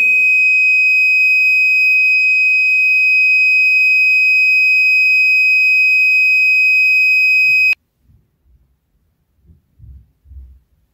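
Small piezo buzzer on a 555 IC tester giving one loud, steady high-pitched tone that cuts off suddenly about three-quarters of the way through; this tone is shown for a faulty NE555 chip in the socket. A few faint knocks follow near the end.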